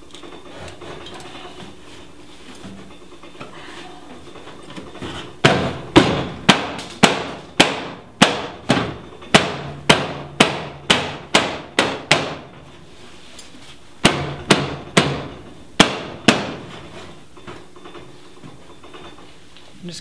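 Repeated sharp blows on the sheet-steel rear quarter panel of a Jeep Cherokee XJ as it is folded over along its crease. A run of about fifteen strikes, roughly two a second, starts about five seconds in. A second, shorter run of about five follows a couple of seconds later.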